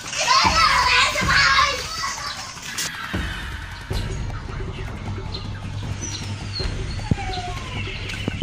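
Children's voices, shouting and playing, loud for the first two seconds or so, then dropping away to a steady low hum with a few short chirps.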